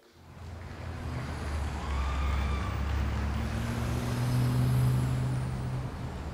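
Road traffic: a passing vehicle's engine drone fades in, grows louder to a peak about five seconds in, then drops back.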